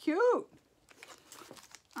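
Faint rustling and crinkling of a cloth drawstring project bag as hands rummage inside it, in soft scattered clicks and scrapes.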